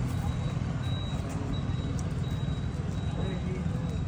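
Steady low rumble of background noise at a street food stall, with a thin, steady high-pitched whine and faint voices in the background near the end.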